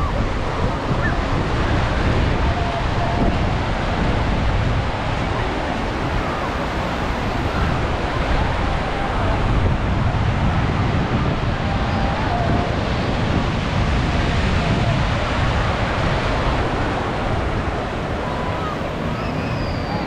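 Small waves breaking and washing up a shallow sandy beach in a steady, continuous wash of surf.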